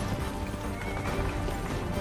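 Hooves of chariot horses clattering, with a brief horse whinny about a second in, over a film score.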